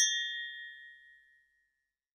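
A single bright bell-like ding, struck once at the start and ringing out over about a second and a half: a transition sound effect on a title card.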